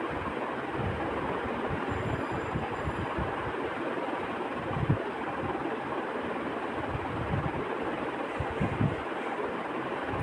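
A metal spoon stirring and scraping pieces of fish in a kadai over a steady background hiss, with a few soft knocks of the spoon, the loudest about five seconds in.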